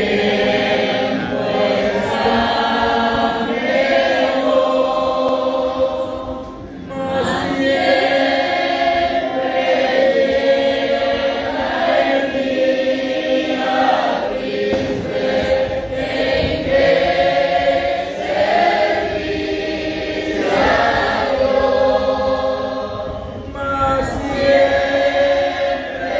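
A congregation singing a hymn together, in long held phrases with short breaks between them.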